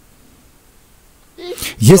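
Low background hiss for about a second and a half, then a man's voice abruptly begins speaking Russian.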